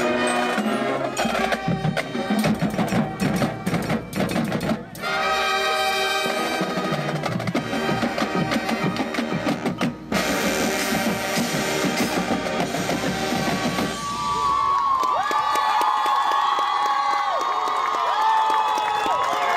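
Marching band with brass, drumline and mallet percussion playing the loud finale of its show, with drum rolls and hits and short breaks about five and ten seconds in. Near the end the music gives way to a crowd cheering and whistling.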